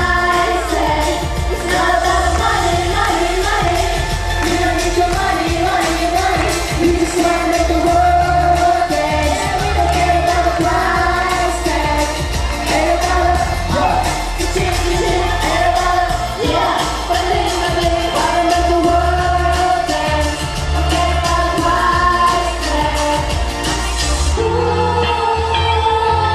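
Pop song sung by several voices into handheld microphones over a backing track with a steady beat and heavy bass.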